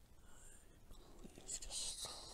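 Quiet, with a faint breathy hiss of a person's breath or whisper starting about one and a half seconds in.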